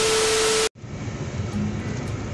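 A TV-static transition sound effect: loud hiss with a steady tone through it, which cuts off abruptly about two-thirds of a second in. After it comes the low, steady rumble of a car cabin in slow traffic.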